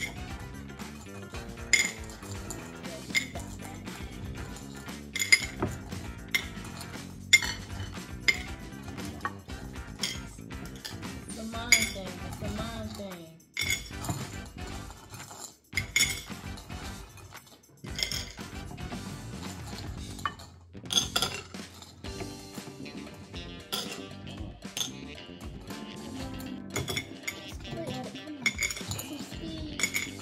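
Small glass bowl clinking as fingers reach in and chewy candies are picked out one at a time: a sharp, ringing clink every second or two, at an irregular pace.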